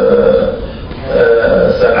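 A man's voice speaking Arabic into a microphone, drawn out and halting, with a brief lull just under a second in.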